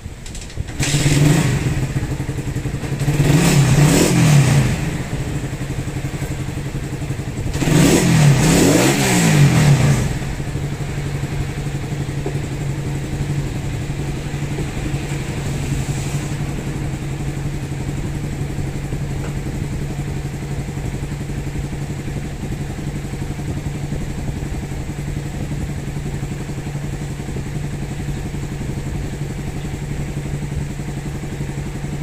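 Suzuki Raider 150's single-cylinder four-stroke engine starting about a second in and being revved in three short bursts, then idling steadily. It runs without the earlier noise, now that the timing chain and guide are new and the tensioner has been reset.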